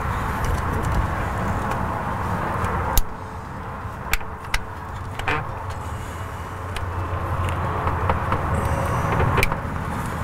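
Plastic clicks and rattles of a transmission wiring-harness connector being pushed together and its locking collar turned to seat it, with a sharp click about three seconds in and a few lighter ones after, over steady background noise.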